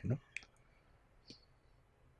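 A man's voice finishes a word, then a near-silent pause holding two faint, short clicks about a second apart.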